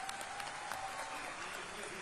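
Faint crowd applause and cheering, an even clatter of many hands.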